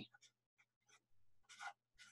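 Faint felt-tip marker writing on paper: a few short, soft scratching strokes, with one slightly louder stroke about one and a half seconds in.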